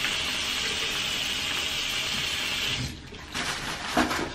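Water from a bathroom faucet running steadily into a ceramic sink basin, shut off about three seconds in; a sharp click follows near the end.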